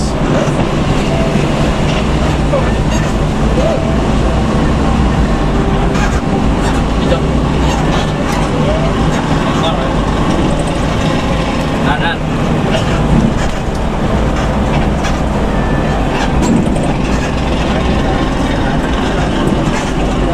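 Intercity bus cruising at highway speed, heard from inside the cabin: a steady low engine drone mixed with continuous road and tyre noise.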